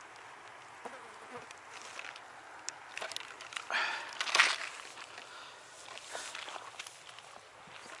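Faint handling and rustling noises from someone moving about on a grassy bank over a quiet outdoor background, with a few small clicks and a louder rustle about four seconds in.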